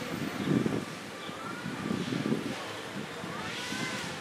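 Outdoor street ambience: a steady hiss of passing traffic with a faint murmur of voices.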